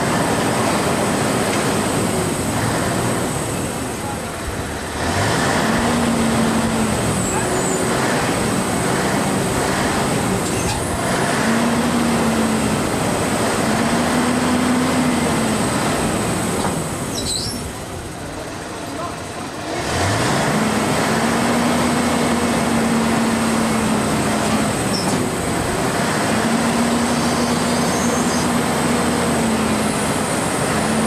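Mobile crane's diesel engine running and revving up several times, each rise held for a second or two, with a quieter lull about two-thirds of the way through.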